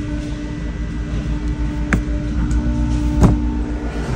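Steady low rumble and electrical hum of store background noise, with two short sharp clicks, one about two seconds in and another just past three seconds.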